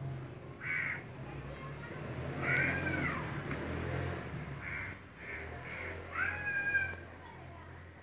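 About five short animal calls a second or so apart, each rising and then falling in pitch, the longest near the end, over a steady low hum.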